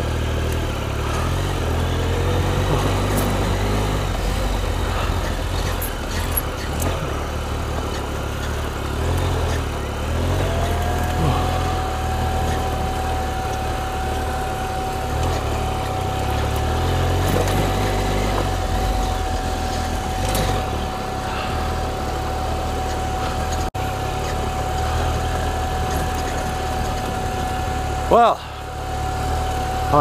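Triumph Explorer XCa's inline three-cylinder engine running at low, varying throttle as the adventure bike is ridden slowly along a rough dirt forest track. A thin steady whine joins about a third of the way in.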